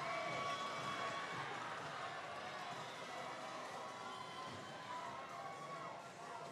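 Steady noise of a large indoor crowd cheering and calling out, with faint background music underneath, slowly easing in loudness.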